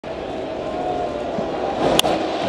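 Ballpark crowd murmuring steadily and swelling a little near the end. Then comes the single sharp crack of a wooden baseball bat squarely hitting a pitched fastball, the contact of a home-run drive.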